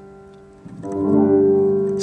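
Keyboard playing a piano-like patch: the last notes fade, then about two-thirds of a second in a new chord is struck and held, a demonstration of the G2 chord voiced in place of an E minor 7.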